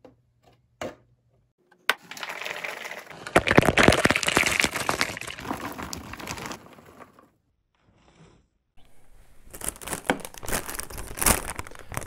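Popcorn poured out of a foil-lined snack bag: the bag crinkles and the popped kernels fall and tick against each other and the container. There are two pours, one starting about two seconds in and lasting about five seconds, and another starting near nine seconds.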